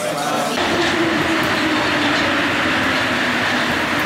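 Inside a moving Paris Métro line 6 carriage: the rubber-tyred train runs with a steady loud rumble and hiss and a faint low droning tone, starting about half a second in.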